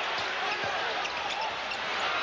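Steady crowd noise in a basketball arena, many voices blending together, with a basketball bouncing on the hardwood court during live play.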